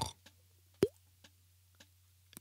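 A single short cartoon bubble-pop sound effect with a quick upward swoop in pitch, a little under a second in, as the dozing cat's snot bubble bursts.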